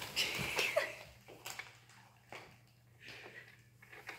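Rustling and crinkling of a large white packing sheet as a cat pounces into it and burrows underneath. The rustling is loudest in the first second, then breaks into scattered shorter rustles.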